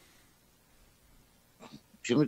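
Near silence: room tone on a phone-in line, with a faint short sound near the end.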